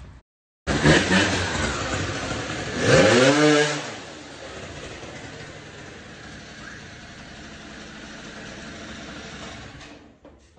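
MBK Booster scooter engine running, revved up and back down about three seconds in, then settling to a steady idle.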